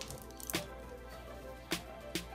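Soft instrumental background music with steady held notes, broken by two short sharp clicks, one about half a second in and one near the end.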